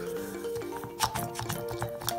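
Background music with steady held notes. A couple of short clicks about a second in come from a cotton pad being pressed down on the pump dispenser of a bottle of ethyl alcohol.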